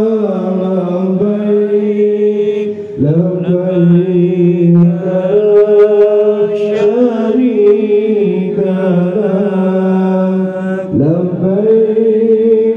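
A group of men chanting an Islamic devotional recitation together in unison, in long held notes, with a new phrase starting about three seconds in and again near the end.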